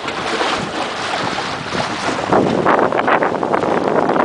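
Wind buffeting the microphone, with water washing along the hull of a Wayfarer sailing dinghy under way in choppy water. The gusts grow louder about halfway through.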